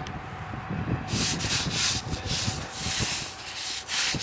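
A gloved hand brushing and wiping snow off a granite headstone, a quick series of rough swishing strokes starting about a second in.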